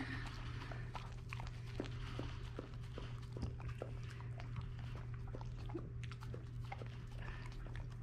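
A dog licking and chewing food off a plate: many soft, wet tongue smacks and clicks, scattered unevenly.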